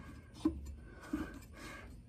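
Faint handling noise of a steel mower blade being fitted onto its blade adapter by hand, with two short, soft knocks about half a second and just over a second in.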